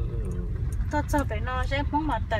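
Low, steady rumble of a car moving slowly, heard from inside the cabin. About a second in, a person's voice starts, its pitch sliding up and down.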